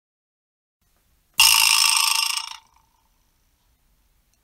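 Vibra-slap struck once about a second and a half in: the loose metal rivets in its wooden box give a fast buzzing rattle that dies away after about a second.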